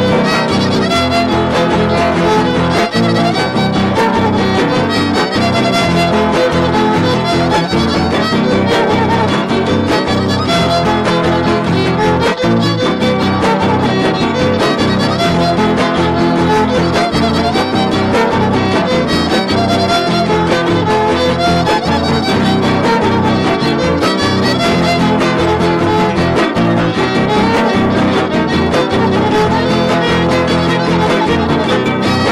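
Trio huasteco playing a son huasteco without singing: the violin carries the melody over the strummed jarana huasteca and huapanguera.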